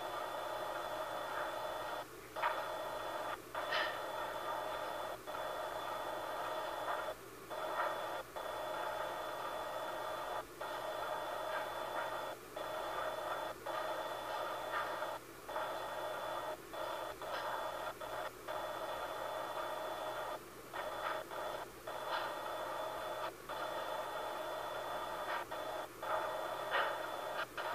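Steady hiss from a video monitor's small speaker, relaying the room that its camera watches, with a faint steady high tone and brief dropouts every one to two seconds.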